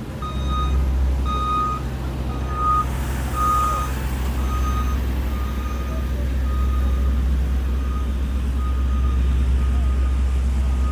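Reversing alarm on a diesel construction vehicle backing up, beeping evenly a little more than once a second over the steady low rumble of its engine. The beeps grow fainter in the second half.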